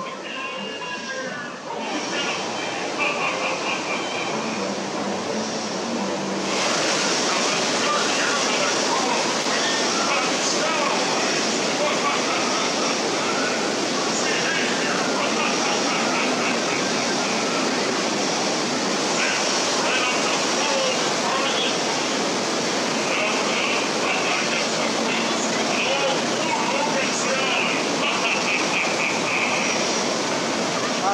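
Steady rushing outdoor background noise with faint voices of people talking in the distance, stepping louder about two seconds in and again about six seconds in.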